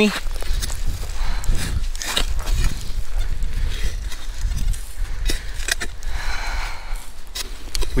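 Wind and handling noise on a chest-worn camera's microphone: a steady low rumble with light rustling and a few soft knocks, and no clear metal-detector tone.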